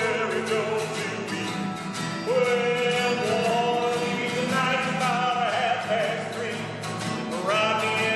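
Two men singing a gospel spiritual in operatic style, one of them a bass, with long held notes and vibrato, over two steel-string acoustic guitars strumming.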